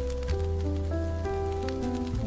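Smooth jazz piano playing a slow run of sustained notes over low bass notes, with a steady patter of small ticks underneath.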